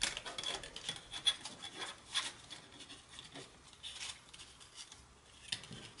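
A ruler slid through stiff cardstock loops and shifted over a plastic cutting mat: faint rubbing and scraping of card, ruler and plastic, with scattered light clicks and taps.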